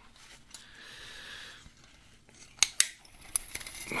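Gloved hands handling a metal tunnel mole trap: soft rubbing, then a few sharp metallic clicks from the trap's wire loops and springs, the two loudest close together about two and a half seconds in.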